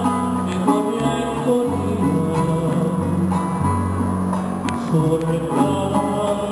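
Instrumental interlude of a small Venezuelan folk ensemble: plucked strings, led by a small four-string guitar (cuatro), over a bass line that moves between held notes, with no singing.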